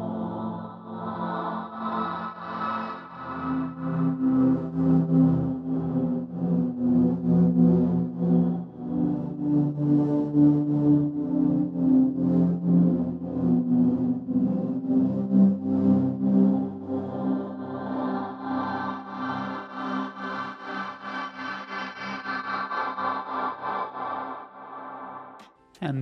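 Synthesizer pad playing sustained, slowly changing chords that swell and fade, automatically panned across the stereo field as their level rises and falls.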